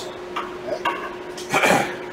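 Steel pry bar working a truck fifth wheel's locking mechanism to trip the jaws closed: a few faint metal clicks, then a louder metallic clatter about a second and a half in.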